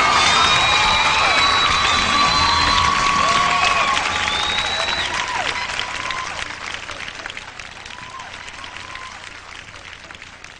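Concert audience applauding and cheering with high whistles at the end of a live song, the band's last sounds stopping about three seconds in. The applause then dies away steadily.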